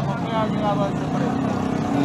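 Motorcycle engines running as they ride past along a busy street, a steady low drone, with faint voices in the background.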